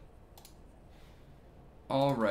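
A few faint clicks at a computer over quiet room tone, the strongest about half a second in. A man's voice starts right at the end.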